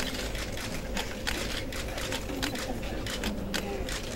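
Camera shutters clicking rapidly and irregularly, several at once, over a low murmur of voices and a faint steady hum.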